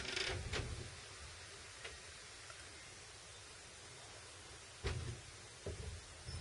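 Handling noise from a hand-held soldering station: a few soft knocks and rubs, one at the start and two near the end, over faint room hiss.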